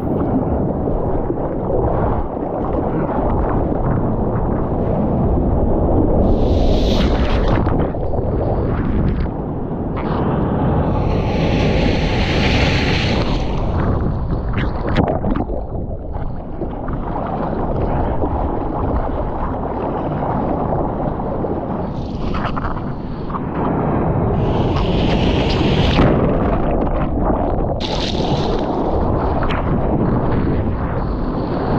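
Sea water sloshing and rumbling against a surfboard and an action camera held at the water's surface, with several bursts of hissing spray.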